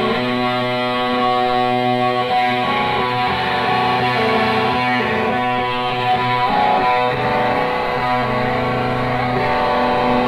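Distorted electric guitars played live through amplifier stacks, holding ringing, sustained chords that change every second or two, without drums.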